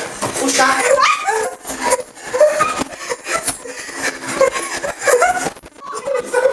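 People's voices laughing and calling out without clear words, heard from inside an inflatable plastic bubble ball, with scattered short knocks.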